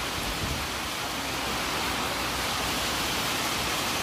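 Steady hiss with no other sound: an even background noise that holds the same level throughout.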